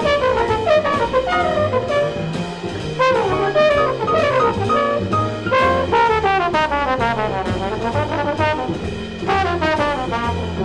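Live jazz octet with a horn front line of saxophones, cornet, trumpet and trombone over piano, double bass and drum kit. The horn lines slide up and down in pitch above a bass that steps from note to note about twice a second, with steady cymbal ticks.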